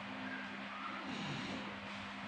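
Quiet room tone: a steady low hum with no other clear sound.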